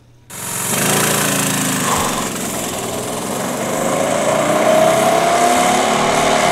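A go-kart's small gas engine runs, cutting in abruptly just after the start. In the second half its pitch rises gradually as it speeds up.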